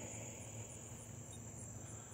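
Faint outdoor insect chorus: a steady high-pitched trill, with a softer, higher chirp repeating a few times a second.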